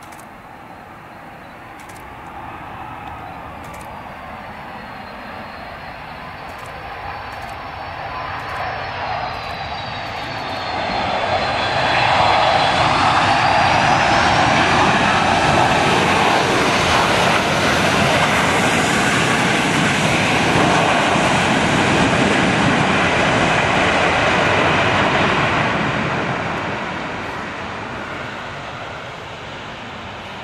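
Boeing 757-200 jet engines: a whine and rushing roar that swell as the jet comes in, stay loud for about a dozen seconds as it runs along the runway, then fade away. Partway through, the engines' whine dips in pitch and then climbs, as the thrust is raised.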